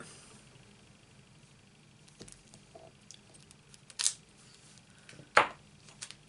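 Clear acrylic stamp block handled on a craft desk: a few faint clicks, then two sharp clacks about four and five and a half seconds in, the second louder, as the block is taken off the freshly stamped card and put down.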